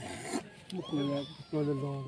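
A man's voice calling out in two drawn-out, level-pitched shouts in the second half, with other voices around.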